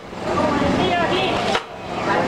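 Voices talking indistinctly in the background, without clear words.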